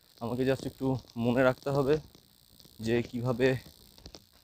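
A man talking in two short phrases over a steady, high-pitched insect chorus that continues through the pauses.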